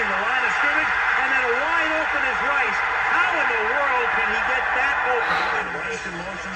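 Football game broadcast audio: a commentator talking over steady stadium crowd noise.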